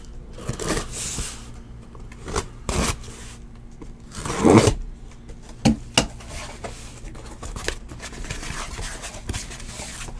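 A cardboard case being cut and torn open: a run of short scraping rips with a few sharp knocks, the loudest rip about four and a half seconds in.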